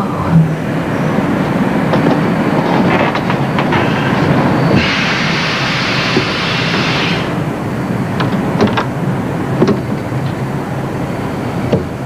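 Steady rumble of a moving passenger train heard from inside a car. About five seconds in there is a hiss lasting some two seconds, and near the end a few sharp clicks.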